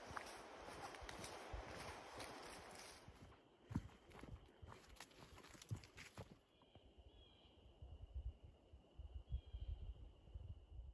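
Faint footsteps on a dirt forest trail, with a few sharper steps and snaps in the middle. Near the end there are soft low thumps and a faint steady high tone.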